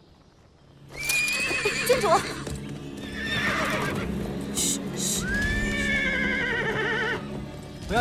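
A spooked horse neighing loudly and repeatedly, starting about a second in, with a long rising, quavering whinny about five seconds in: the horse has taken fright and is rearing.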